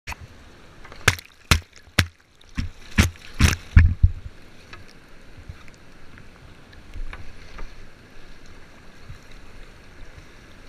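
A quick run of about seven sharp knocks right at the camera in the first four seconds, then the steady rush of whitewater rapids.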